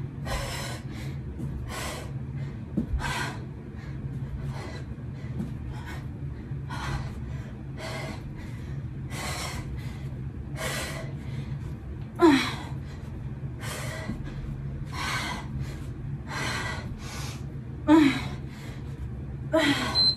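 A woman breathing hard from exertion: short, sharp exhales about once every second or so, a few of them voiced as small grunts.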